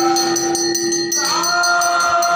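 Devotional aarti singing by a group of voices holding long notes, moving to a new note about a second in. A steady beat of short metallic strikes, about four a second, runs under the voices.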